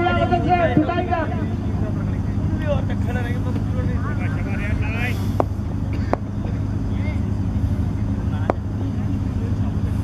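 Cricket players' voices calling out across the field in short shouts over a steady low hum, with a few sharp single knocks in the second half.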